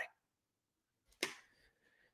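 A quiet pause broken by one short, soft whoosh about a second in: a quick breath into the headset microphone.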